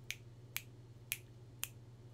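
Fingers snapping in a steady waiting beat, four sharp snaps about two a second.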